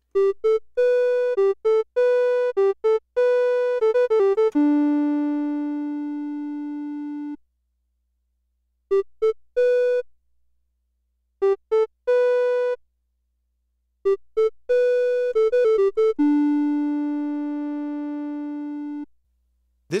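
Moog System 55 modular synthesizer playing a filterless recorder-like voice. A quick run of short notes ends on a long lower note that slowly fades, then come a few short notes, and the run and held note repeat. The output is fed back through an attenuator into the VCA's control input, and the attenuator is being adjusted, so amplitude modulation gives a mild emulated filter resonance.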